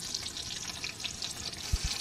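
Pork frying in a steel wok over a wood fire: a steady crackling sizzle, with a few low knocks near the end as a metal spoon stirs in the pan.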